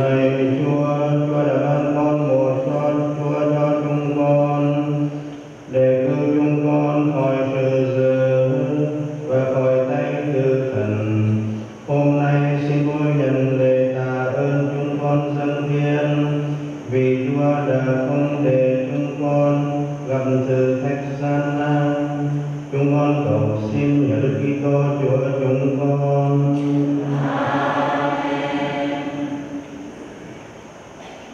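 Sung Catholic liturgical chant: voices in a low, male-pitched range hold steady notes in five long phrases of about five to six seconds each, with short breaths between them, fading just before the end.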